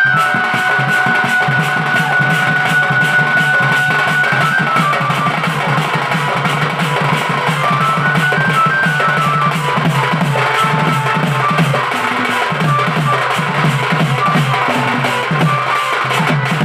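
Live folk dance music: a two-headed barrel drum beaten in fast, even strokes under an electronic keyboard playing a held and stepping melody.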